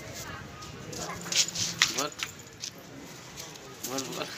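Faint voices of small children, with a few short high calls and squeals, over low outdoor background noise.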